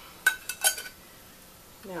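Two light clinks of a utensil against a container, about a third of a second apart, each with a brief ringing tone.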